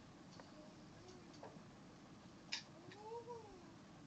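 A cat meowing faintly: a short call about a second in, then one longer meow that rises and falls in pitch near the end. A single sharp click, the loudest sound, comes just before the longer meow.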